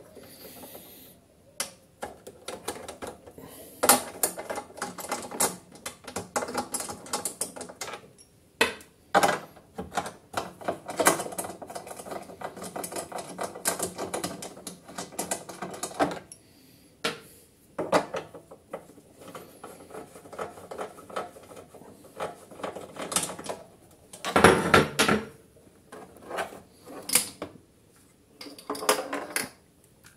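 Ratchet wrench clicking in quick runs as the 10 mm bolts holding the plastic recoil starter housing of a Kawasaki mower engine are undone, with bolts and housing clattering; a louder clatter comes late on as the housing is handled.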